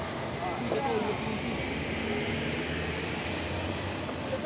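Toyota HiAce minibus driving past close by on a rough dirt road, its engine running steadily under the noise of tyres on loose gravel.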